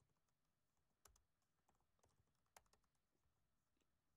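Near silence with a few faint computer keyboard clicks, two a little clearer about a second and two and a half seconds in: a figure being typed into a budget spreadsheet.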